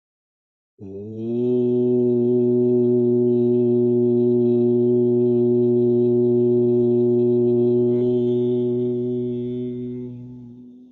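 A man's voice chanting a single long, steady mantra note. It starts about a second in, is held at one pitch for about seven seconds, and fades away near the end.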